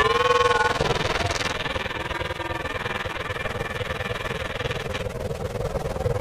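Electronically distorted cartoon soundtrack: a warbling pitched tone that bends in pitch in the first second, over a steady hum and rough low rumble. The sound is muffled for a few seconds in the middle.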